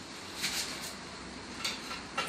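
Faint handling noises from working on the bicycle brake's bleed kit: two brief soft clicks, about half a second in and near the end, over a low background hiss.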